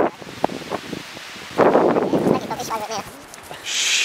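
Gusts of wind buffeting the microphone, one at the start and a longer one about a second and a half in, with a brief distant voice after it and a short hiss near the end.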